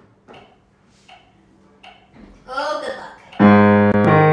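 Grand piano: after a few faint sounds and a short stretch of voice, a chord is struck about three and a half seconds in, loud and ringing on.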